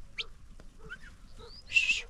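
Flock of sheep grazing, with short animal calls, a few rising bird-like chirps, and a brief loud shrill call near the end.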